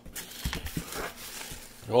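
Handling noise from a packed cardboard box: several light knocks and clicks with some rustling of plastic bags as a stainless steel grill tool is lifted out.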